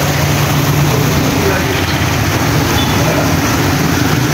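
Muddy floodwater in a swollen seasonal river rushing and churning white over a broken concrete ledge: a loud, steady rush with a low steady hum underneath.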